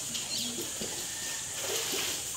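Pool water splashing steadily as children swim with floats, with faint voices in snatches.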